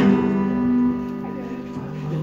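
Amplified acoustic guitar strummed once as a sound check, the chord starting sharply and ringing out, fading over about a second.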